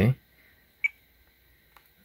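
A single short click a little under a second in, from a control being pressed on a Tango 2 radio transmitter while its curve list is being stepped through.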